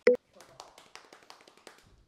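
A short spoken 'oh' right at the start, then a run of faint, irregular light taps.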